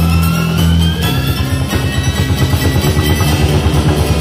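Live band playing an instrumental passage on drum kit, bass and electric instruments: a sliding note rises in the first half while the low end holds steady notes, then about a second and a half in the bass and drums break into a fast pulsing rhythm.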